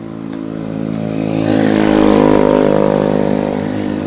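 A motor vehicle passing on the road, its engine growing louder to a peak about two seconds in and then fading.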